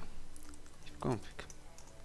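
Typing on a computer keyboard: a scatter of light key clicks as a short shell command is entered.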